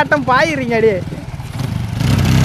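A single-cylinder 100cc motorcycle engine running at low revs under a voice. The voice stops about a second in, leaving the engine's low, steady rumble.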